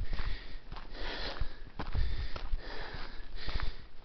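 A hiker breathing hard while walking uphill, a series of rough breaths about a second apart. Low thumps and rumble from his steps on the dirt road and the handheld camera run underneath.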